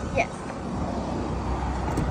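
Steady low rumble of motor vehicle noise.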